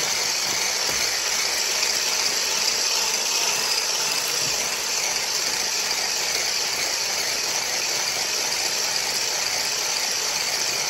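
Handheld electric stick blender with a whisk attachment running steadily, whipping fresh cream and sugar in a stainless steel saucepan; a constant, fairly high-pitched motor sound with no change in speed.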